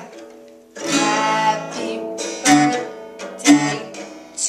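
Acoustic guitar strummed: three chords, the first about a second in, then two more a second apart near the end, each left to ring.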